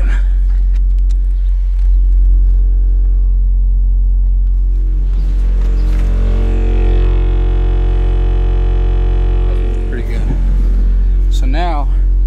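A 45 Hz sine test tone from a phone tone generator played through a subwoofer in a ported enclosure: a steady, deep droning tone with a buzz of overtones over it. The frequency is judged to be above the box's port tuning.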